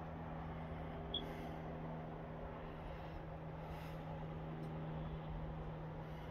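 A steady low hum, like a distant motor running, over a faint rumble, with one short high chirp about a second in.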